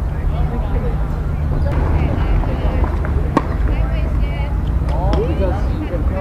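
Voices talking over a steady low rumble, with one sharp knock about three and a half seconds in.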